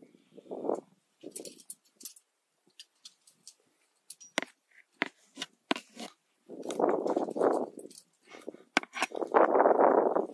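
A climber's breathing under effort: several loud breaths, each about a second long, the strongest in the second half. Sharp clicks and small metallic clinks of climbing gear and hands on rock sound in between.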